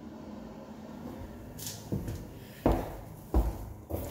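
Quiet room tone, then a few dull thumps in the second half, the two loudest a little over half a second apart near the end: a handheld phone being handled and turned around in a small room.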